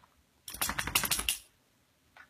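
Two dogs playing: a quick run of clicks and scuffling starts about half a second in and lasts about a second.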